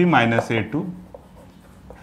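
Chalk writing on a chalkboard: faint scratches and light taps as an equation is chalked up, heard most clearly in the quieter second half.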